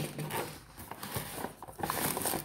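Hands rummaging inside a cardboard box, rustling and scraping the cardboard flaps and packaging in short, irregular bursts with small knocks.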